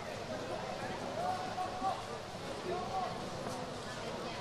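Indistinct voices of people talking, heard faintly over steady outdoor background noise, while harness trotters pulling sulkies go by on a grass track, their hoofbeats soft and low in the mix.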